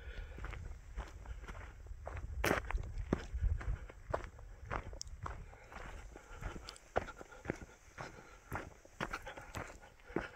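Footsteps on dry, rocky desert ground: an irregular run of short scuffing steps, with a low rumble underneath.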